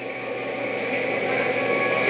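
A steady hum with a few faint high tones, growing slowly louder.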